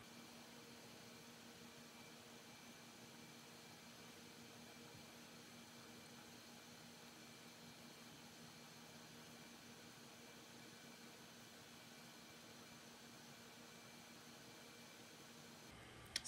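Near silence: a faint, steady hiss of room tone with a faint low hum.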